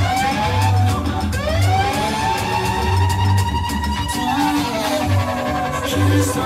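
Live band music played over a PA system: a steady bass beat under a long pitched glide that rises early, holds for a few seconds and falls away near the end.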